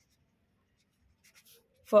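Near silence broken by two or three faint, short scratches of a felt-tip marker writing on paper, about a second and a half in. Speech begins right at the end.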